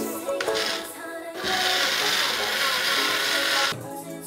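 Background music with a steady grinding hiss in the middle, lasting a little over two seconds, from a pepper mill being worked.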